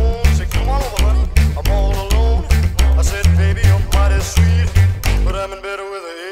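Upright bass slapped in a driving rockabilly rhythm, each low note with a sharp percussive click, played along with a band recording. About five seconds in the bass stops and a held chord rings on.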